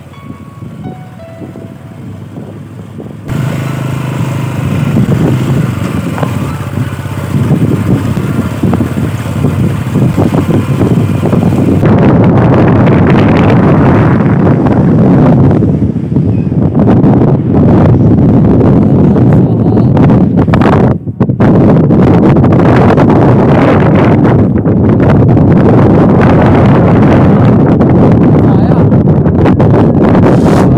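Motorcycle ride with heavy wind buffeting on the microphone over the engine running; the first few seconds are quieter background music, then the wind noise comes in loud and stays.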